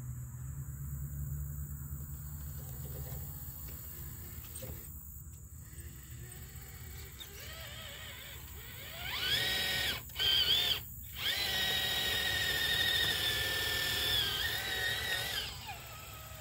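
Electric whine of a scale RC crawler's 27-turn brushed TrailMaster motor and gear drive, run by a Hobbywing 1080 ESC, as the truck drives through mud. A faint low hum at first, then the whine rises about eight or nine seconds in, breaks off twice briefly, and holds steady until it stops shortly before the end.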